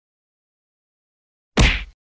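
Dead silence, then about one and a half seconds in a single loud, sharp whack-like hit that dies away within half a second.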